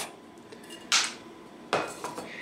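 Two brief clattering handling sounds, one about a second in and one near the end, as a tape measure and a stainless steel tumbler are handled and the tumbler is set down on a wooden workbench.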